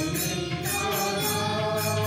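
Devotional chant sung to musical accompaniment, with a light percussion beat ticking evenly about three times a second.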